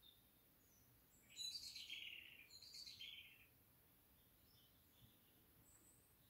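Faint bird song: a short run of high chirps starting about a second in and lasting around two seconds, otherwise near silence.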